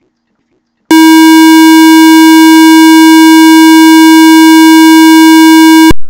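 A very loud, steady electronic tone on one pitch with a buzzy edge. It starts abruptly about a second in, holds for about five seconds, and cuts off suddenly.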